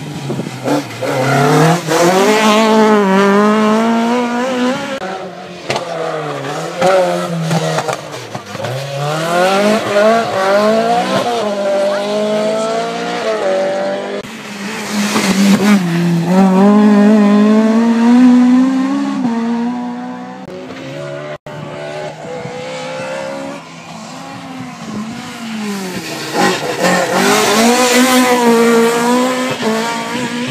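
Rally cars driven flat out, the first a Mk2 Ford Escort, engines revving hard, their pitch climbing and falling again and again through gear changes and braking for a corner. Several loud passes close by, with an abrupt cut about two-thirds of the way through.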